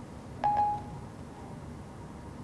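The iPhone 4S Siri chime: one short, clear electronic beep about half a second in, the sound Siri makes when it stops listening and starts working on the spoken question.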